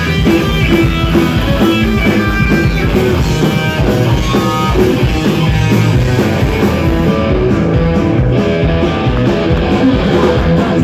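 Punk rock band playing live: electric guitars, electric bass and drums at full, steady volume, heard from within the crowd on a phone.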